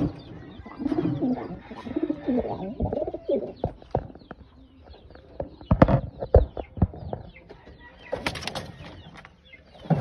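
Racing pigeons cooing in a loft, the low coos heaviest in the first few seconds, followed by several sharp knocks and rattles around the middle as the birds are handled in their wooden nest boxes.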